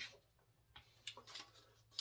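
Near silence, with a few faint light ticks and rustles about a second in from a paper insert being handled and fitted into a plastic CD jewel case.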